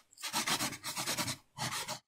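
Pencil scratching quickly across paper in rapid sketching strokes, used as a drawing sound effect: a longer run of strokes, then a brief one near the end.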